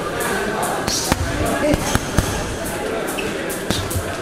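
Boxing gloves striking a heavy punching bag: a series of punches landing at irregular intervals, some in quick pairs, over background gym voices.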